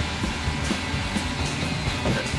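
Background rock music over a steady rush of noise.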